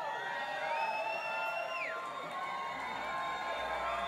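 Concert audience cheering, with a few long whoops that rise, hold and fall; the longest is held for about a second near the start.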